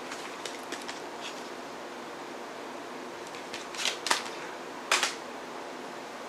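Plastic CD cases and packaging being handled: a few light clicks, a short rustle a little under four seconds in, and one sharp click about five seconds in, the loudest sound, over a steady room hum.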